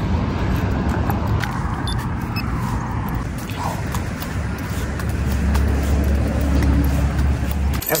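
Road traffic beside a sidewalk: cars going by with a low rumble that swells in the second half, then cuts off suddenly near the end.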